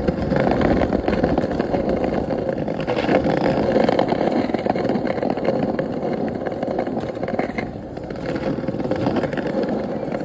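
Small hard wheels of a kick scooter rolling over paving stones: a steady rumbling clatter, dipping briefly about eight seconds in.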